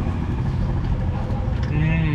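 Steady low rumble of road traffic, with a man's voice starting briefly near the end.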